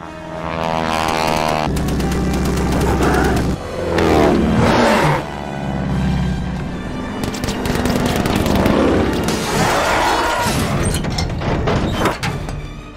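Orchestral film score mixed with the drone of biplane engines. One plane swoops past about four to five seconds in, its pitch falling as it goes. Bursts of machine-gun fire come in the later part.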